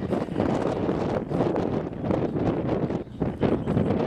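Gusty wind buffeting the microphone, an uneven rush that drops briefly about three seconds in.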